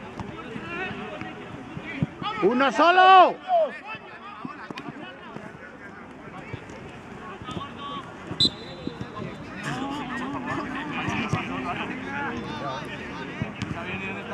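Players' voices calling out across an outdoor football pitch, with one loud, drawn-out shout about two and a half seconds in.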